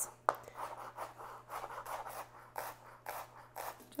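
Chef's knife finely mincing a shallot on a cutting board: a run of quick, irregular chopping and scraping strokes, about two to three a second.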